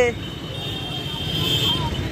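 Street traffic with a motorcycle engine running close by: a steady low rumble. A faint high steady tone sounds through the middle.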